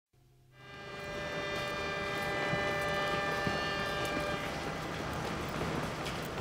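A low rumble under a sustained chord of steady ringing tones, fading in during the first second; the tones thin out after about four and a half seconds while the rumble continues.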